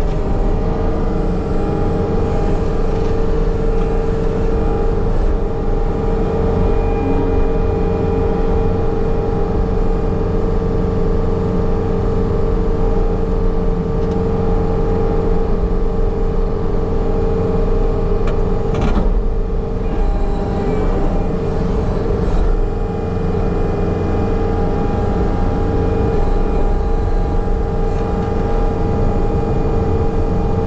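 Tracked skid loader's diesel engine running steadily under load, with a steady high tone over the engine's drone, as the machine spreads and smooths dirt. A single sharp click sounds once past the middle.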